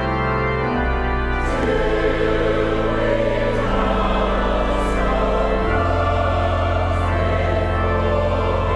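Church pipe organ holding sustained chords over low pedal notes. About a second and a half in, a mixed choir of men and women comes in singing with the organ.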